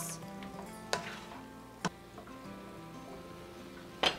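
Seasoned venison cubes frying in a pan with a faint sizzle, and a spatula clicking against the pan twice, about one second and two seconds in. Soft background music runs underneath.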